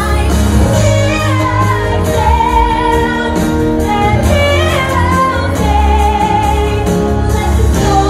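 A woman singing a show ballad over full musical accompaniment, holding two long notes, one a few seconds in and one past the middle.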